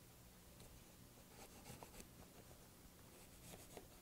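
Near silence, with faint, scattered scratches of a pencil drawn along the edge of a paper template on Heat Bond paper.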